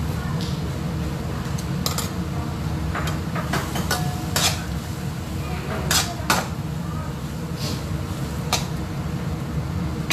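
Metal ladle clinking and scraping against a stainless-steel wok as mushrooms simmer in broth, with a handful of sharp knocks scattered through, over a steady low hum.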